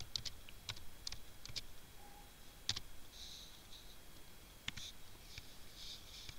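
Faint computer keyboard keystrokes: scattered single key clicks, a few close together and then pauses, as a few characters are typed.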